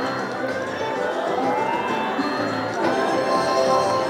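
Lucky Pot video slot machine playing its electronic bonus music as the reels spin in free spins, with a rising sweep tone: one ends just after the start, and another climbs from about a second in to about three seconds in.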